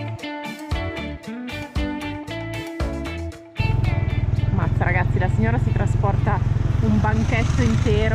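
Background music with plucked, guitar-like notes that breaks off about three and a half seconds in. A louder, steady low rumble of a motorbike riding along follows, with a voice over it.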